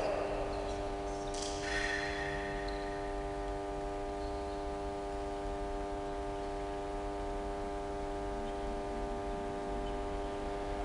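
A steady electrical hum made of several even tones, left as a louder sound fades out in the first half second, with a brief faint clatter about two seconds in.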